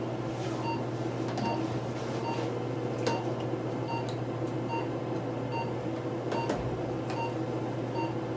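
Medical equipment in an examination room: a steady electrical hum with a short electronic beep repeating evenly a little more than once a second, and a couple of sharp clicks.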